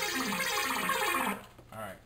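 Synthesizer arpeggio loop playing back as a run of quick stepped notes. It stops about a second and a half in, and a short burst of notes sounds just before the end.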